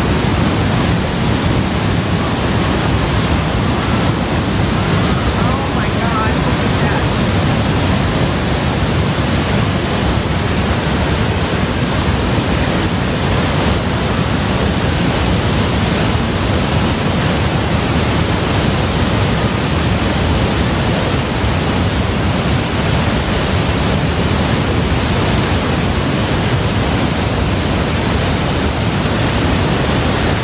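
Niagara Falls pouring onto the rocks below: a steady, unbroken rush of falling water heard close to the plunge.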